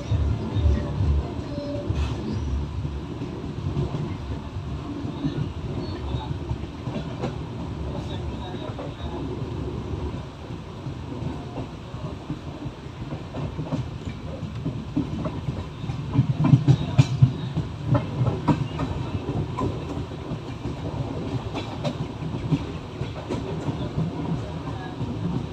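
Express passenger train running at speed, heard from an open coach doorway: a steady rumble of the wheels with clickety-clack over the rail joints. About two-thirds of the way in the clatter grows louder and sharper as the coaches pass over the station pointwork.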